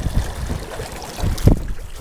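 Wind buffeting the microphone in uneven gusts, with water splashing along the hull of a small sailboat under sail; the strongest gust comes about one and a half seconds in.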